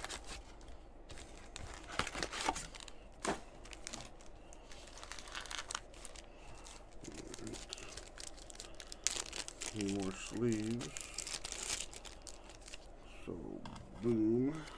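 Plastic packaging crinkling and tearing, in scattered crackles and rips, as a foil trading-card pack and then a clear resealable bag of card supplies are handled and opened. Brief murmurs of a man's voice come about ten seconds in and again near the end.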